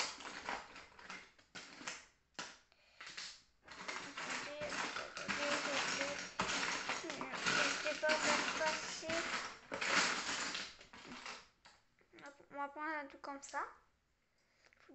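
Plastic Lego bricks clattering and rattling as pieces are rummaged through and handled, a dense run of small clicks. A child's voice speaks briefly near the end.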